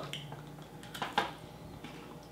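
Light handling sounds: a few faint clicks and taps as pieces of a chilled candy bar are picked up off their wrapper on the table, the loudest click a little past halfway.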